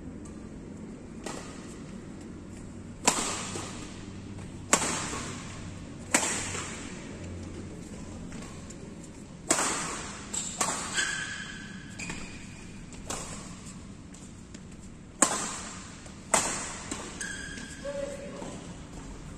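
Badminton rackets striking a shuttlecock in a doubles rally: about ten sharp cracks, one to two seconds apart, each ringing on in the large hall, with a gap of a few seconds in the middle.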